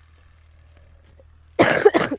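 A person coughing close to the microphone: one brief, loud cough in two quick parts near the end, after a faint, steady low hum.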